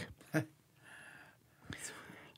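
A pause in a man's spoken reading: a short trailing voice sound, then faint breath noise, with a soft inhale near the end.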